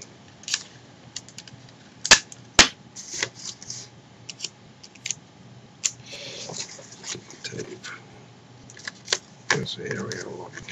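Sticky tape and folded printer paper being handled: paper and tape crinkling with scattered small clicks. Two sharp snaps come about two seconds in, half a second apart.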